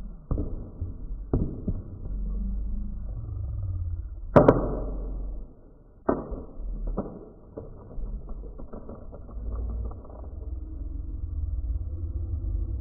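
Mobile phone being smashed onto a concrete sidewalk: a string of sharp knocks and thuds, the loudest about four seconds in, with smaller knocks following, over a low rumble.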